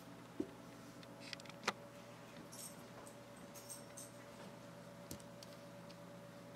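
A few faint, short clicks of glass beads and a metal shank button as a beaded bracelet is handled, the sharpest about two seconds in, over a steady low hum.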